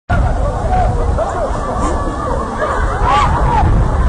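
Babble of many people talking at once, several voices overlapping, over a steady low rumble.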